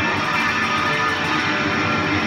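Telecaster-style electric guitar being played, a continuous stream of notes at an even loudness.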